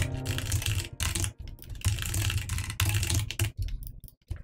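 Typing on a computer keyboard: irregular runs of keystrokes broken by short pauses.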